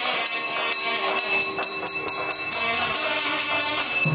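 Temple bells struck rapidly and evenly, about six strikes a second, their ringing tones overlapping into a continuous clanging, as rung during the arati lamp offering.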